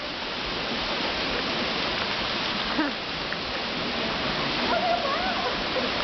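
Steady rushing of a waterfall pouring down a rock face.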